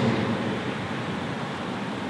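Steady, even hiss of background noise with no speech: room tone.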